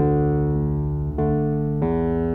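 Instrumental music with no singing: notes and chords struck on a keyboard instrument that ring on, with new notes about a second in and again near the end.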